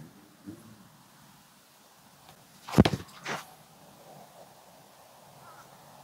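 A disc golf backhand throw: a short rush of noise as the disc is released, about three seconds in, with a smaller one just after. Otherwise quiet outdoor background.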